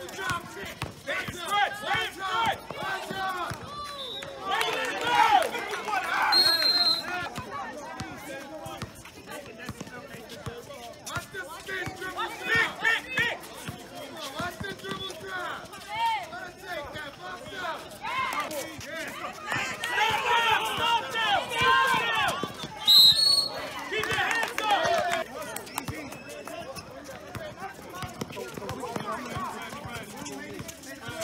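Basketball game sounds: players and spectators calling out and talking throughout, with a basketball dribbled on the court. A short, high, shrill sound cuts through twice, a little after six seconds in and again about 23 seconds in.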